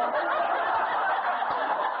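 Audience laughing together at a punchline, a dense, steady wash of many voices.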